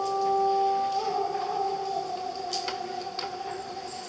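Vietnamese traditional string instruments: a few long plucked notes ringing on and slowly fading, one bending slightly in pitch about a second in, with a few light clicks.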